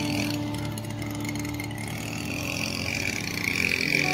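A small motorised machine running steadily, a constant drone with a high whine over it, from maintenance work under way.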